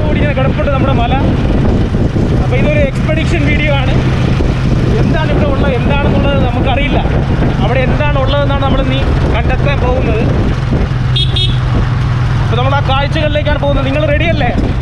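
Car engine running steadily, heard from inside the vehicle, under people's voices.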